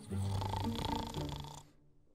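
A man snoring: one long, rattling snore that fades out near the end.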